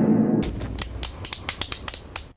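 Tail of a reverb-drenched fart sound effect, used in place of a burp, dying away over the first half second. It is followed by a run of irregular sharp clicks and crackles.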